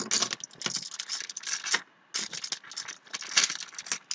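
Metal ball chains and dog tags jingling and clinking as they are handled and sorted by hand, in an irregular run of short rattles with a couple of brief pauses.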